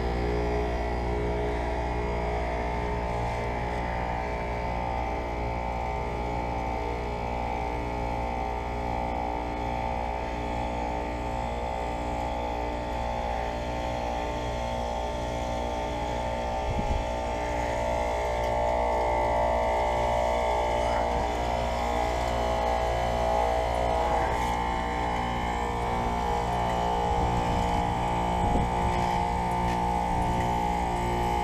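Payne heat pump outdoor unit in its defrost cycle: the compressor hums steadily with a stack of steady tones while the condenser fan stands still. About halfway through, a higher hum grows louder, just after a brief knock.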